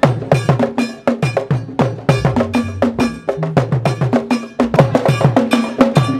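Rhythmic percussion music: a ringing bell and drums struck in a quick, steady pattern.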